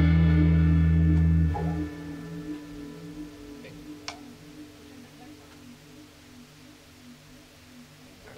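A rock band's last chord ringing out on electric guitar and bass guitar. The low bass stops about a second and a half in, leaving a faint wavering guitar tone that fades away, with a small click about four seconds in.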